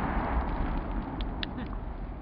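Fading rumble of an M18A1 Claymore mine's detonation, dying away steadily, with a few faint short ticks a little over a second in.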